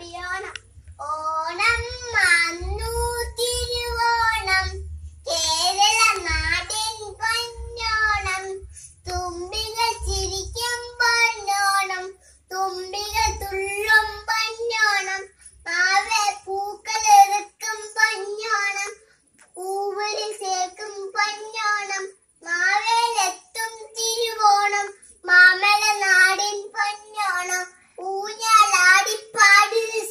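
A young girl singing a song solo and unaccompanied, in a high child's voice, in phrases with short breaths between them. A low rumble sits under the first half.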